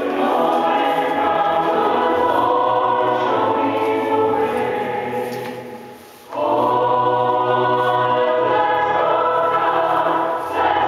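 A choir singing in harmony. One phrase fades out just before six seconds in, and the next phrase starts straight after.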